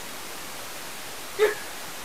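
Steady hiss of microphone and room noise, with one brief vocal sound from a person about one and a half seconds in.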